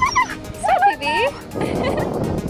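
Siberian husky vocalizing: a short call at the start, then a run of whining, yelping calls that slide up and down in pitch, ending by about a second and a half in.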